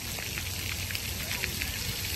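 Water from splash-pad spray fountains hissing and pattering steadily onto the concrete pad, like rain.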